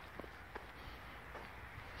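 Faint outdoor background noise with a few soft, short ticks.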